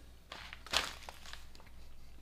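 Quiet chewing of a piece of chocolate, with a couple of soft noises about half a second and three-quarters of a second in.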